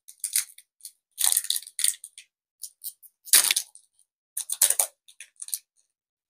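Foil Pokémon booster pack wrapper crinkling and tearing as it is worked open by hand, in a series of short crackles, the loudest about three and a half seconds in.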